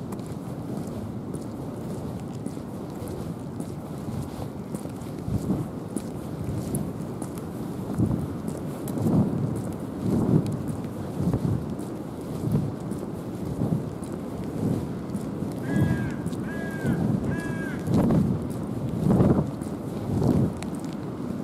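Footsteps on pavement, a slow steady thud about once a second, over a constant low rush of wind on the microphone. About three-quarters of the way through, three short high chirps sound in quick succession.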